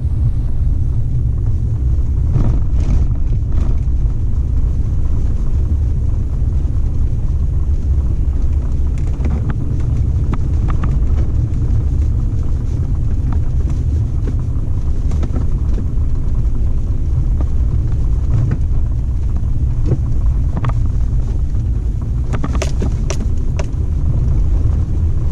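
An off-road vehicle driving along a sandy dirt track: a steady low rumble of engine and tyres, with scattered clicks and knocks and a small cluster of them near the end.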